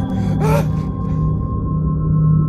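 A man's strained cry or gasp, once about half a second in, over a steady low droning film score that carries on alone after it.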